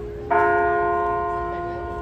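The Delacorte Clock's bronze bell tolling the hour: one sharp strike about a third of a second in, ringing on with several clear tones that slowly fade, over the dying ring of the previous stroke.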